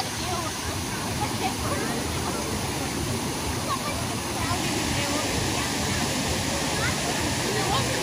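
Steady rush of water pouring from a swimming pool's rock waterfall feature, with the voices of swimmers over it; the rush turns hissier about halfway through.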